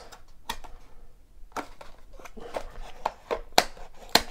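Paperboard trading-card box being opened by hand: scattered sharp clicks and taps as the tucked end flaps are pried loose and folded back.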